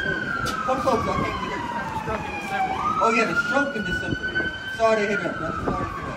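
Emergency vehicle siren wailing in a slow rise and fall. It slides down for about three seconds, sweeps back up quickly, holds, then starts falling again near the end.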